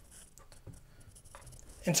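Faint rubbing and handling noise as a cased iPhone is set down onto a magnetic wireless charging pad.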